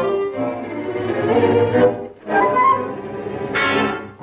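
Orchestral cartoon score with bowed strings playing under the action, dipping briefly about halfway, with a short brighter accent near the end.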